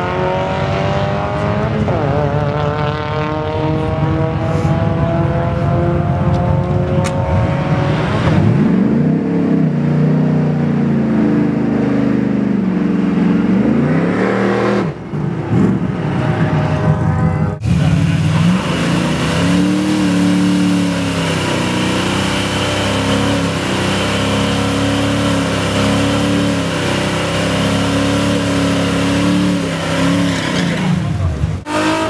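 Two cars accelerating hard down a drag strip, their engine notes rising in pitch through the gears and fading into the distance. After a sudden cut about two-thirds through, a muscle car's engine runs with uneven, wavering revs.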